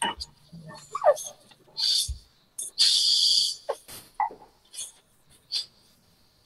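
Short bursts of high hiss, the longest about a second long near the middle, mixed with scattered clicks and faint murmuring.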